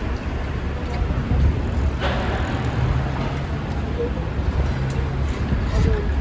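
Busy city street traffic: a steady low rumble of idling and passing vehicles, with a sharp knock about two seconds in.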